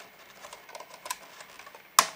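Faint plastic ticks and rubbing as hands work a small side-entry wire connector loose inside a plastic lamp housing, ending in one sharp, loud click as the plug comes free.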